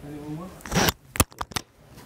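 A brief voice, then a short loud burst of noise and three sharp clicks in quick succession in the second half.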